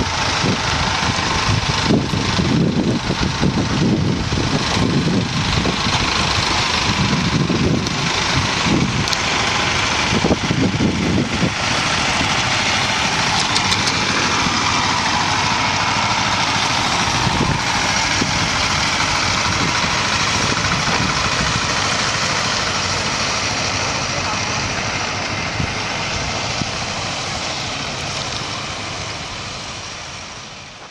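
Engines running steadily: a pickup truck and the motorised disinfectant sprayer it tows, spraying mist. The sound fades out near the end.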